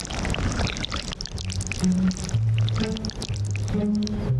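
Cartoon sound effect of thick glue being squeezed out of a bottle and oozing onto a surface, a wet run of short clicks, over background music with a stepping bass line.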